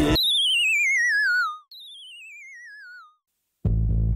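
Rock music cuts off abruptly, followed by a wavering electronic tone that glides steadily downward, then a second, quieter falling tone like it. After a short silence, a rock band with bass guitar starts up near the end.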